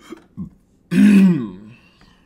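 A man clearing his throat: two short grunts, then one loud, longer clearing about a second in that falls in pitch at its end.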